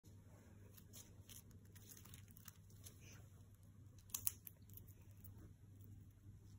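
Faint crunching and clicking of a cockatiel's beak nibbling popcorn, with a couple of sharper clicks about four seconds in.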